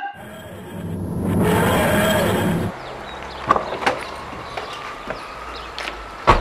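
A swelling whooshing sound effect that builds to its loudest about two seconds in and then cuts off suddenly. After it comes steady outdoor background with a few light knocks and clicks as a car door is opened and someone climbs out.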